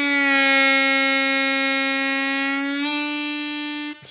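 A C diatonic harmonica playing one long held note that is slowly bent down in pitch, held in the bend, then released back up to the plain note about three seconds in. It cuts off just before the end. This is a slow bending warm-up exercise.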